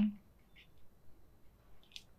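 The tail of a spoken "okay", then a quiet room with a few faint, brief scratches of a paintbrush on watercolor paper and a sharp little click near the end.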